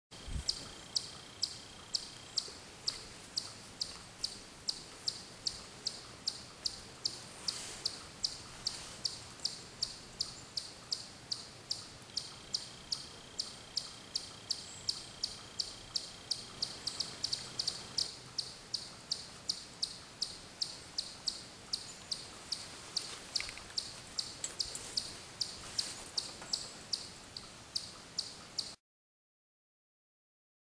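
A regular, high-pitched ticking, about two ticks a second and very even, over faint outdoor background; a thin steady high whine sounds at the start and again in the middle. The sound cuts off suddenly near the end.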